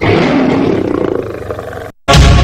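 A lion's roar from an animated film's soundtrack. It starts abruptly and grows weaker, stopping just before two seconds.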